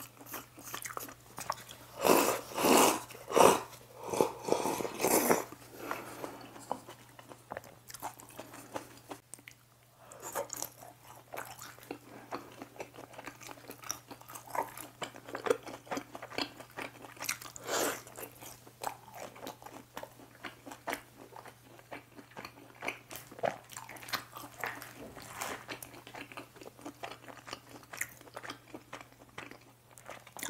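Close-miked eating sounds from a clip-on microphone: loud slurps of jjamppong noodles from about two to five seconds in, then quieter chewing and small wet clicks of the mouth for the rest.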